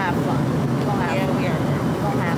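Airliner cabin noise: the steady drone of the aircraft's engines and air, with voices talking over it.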